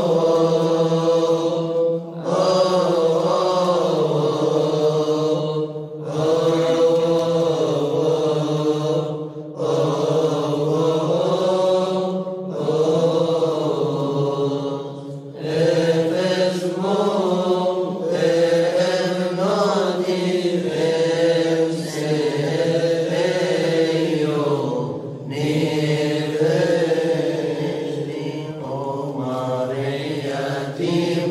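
Coptic monastic chanting: voices singing a slow, winding melody in long phrases, broken by short pauses for breath every few seconds.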